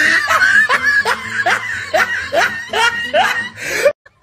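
A person laughing in a quick run of short rising 'ha' sounds, about two or three a second, cutting off suddenly near the end.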